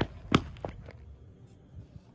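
A few short, sharp knocks and clicks, the loudest about a third of a second in, as the plastic peanut butter jar is handled on the pavement.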